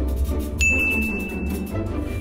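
Background music with a bright ding sound effect about half a second in, ringing for about a second before it fades.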